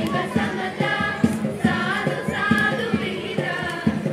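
A group of school students singing together into microphones, their voices in unison over a steady beat.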